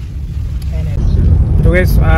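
Steady low rumble of a car driving, heard from inside the cabin, getting louder about a second in.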